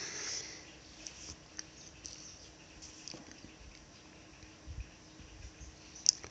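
Quiet room tone with a short hiss at the very start and a few faint, soft ticks scattered through.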